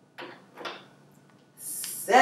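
Small plastic Plus Plus pieces clattering in a plastic bowl as one is picked out: two short clicks, the first about a fifth of a second in and the second about half a second later. A breathy sound near the end leads into a spoken word.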